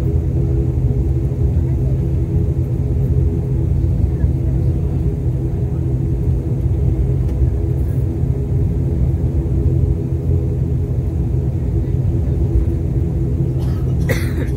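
Turboprop airliner's engines and propellers heard from inside the cabin while the aircraft taxis: a steady, loud drone of several humming tones over a deep rumble.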